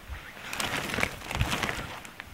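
Clear plastic bag crinkling and rustling as the clothes inside are handled and pulled about, with irregular crackles and a few low handling bumps, busier from about half a second in.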